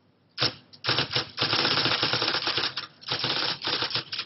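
Typewriter clattering in rapid keystrokes, starting about half a second in, with a short pause near the end before the typing resumes.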